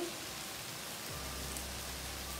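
Water spinach sizzling steadily in a hot frying pan.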